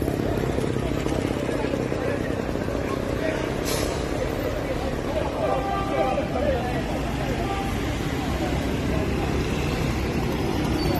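Street sound: a vehicle engine running with a steady low rumble, and people talking indistinctly, more noticeably a little past the middle. A brief sharp click or knock a few seconds in.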